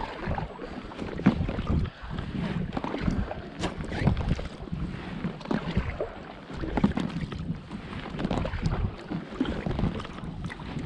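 Packraft paddling: a carbon-shaft kayak paddle dipping and pulling through lake water, with uneven splashes and drips on each stroke and some wind on the microphone.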